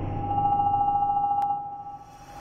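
Logo-reveal sound effect: a single steady ringing tone, loud for about one and a half seconds and then fading, with a sharp click near the point where it starts to fade. Underneath, the low rumble of the rocket-launch effect dies away.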